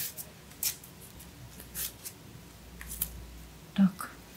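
Green floral tape rustling in the hands as it is stretched and wrapped around a beaded wire stem: four or so brief, soft rustles spread through.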